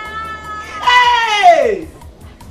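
A woman's long, loud exclamation of welcome that starts high and slides steadily down in pitch, over a steady held note.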